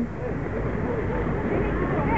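Faint, indistinct voices talking under a steady rushing noise.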